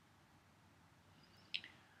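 Near silence, broken about one and a half seconds in by a brief high-pitched squeak, with a fainter one just after, as the metal weight hanger is lifted.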